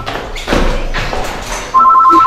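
A person falling down tiled stairs: a heavy thud about half a second in, followed by a second or so of knocking and scuffing. A telephone ring with two pulsing tones starts near the end.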